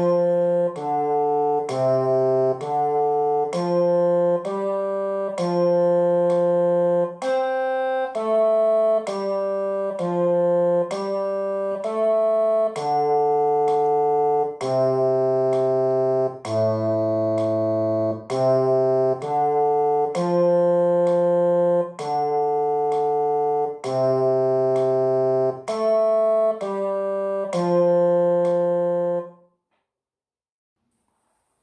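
A single instrument plays a slow sight-singing exercise melody in F major in the bass register, one note at a time. There is roughly one note a second, with some notes held longer. Each note sounds at an even level and cuts off cleanly. The melody ends about a second before the end.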